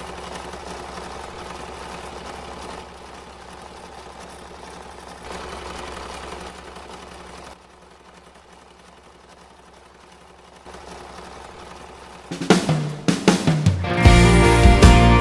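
A low, steady background hum that steps up and down in level several times, then near the end a quick run of sharp drum hits that starts the song.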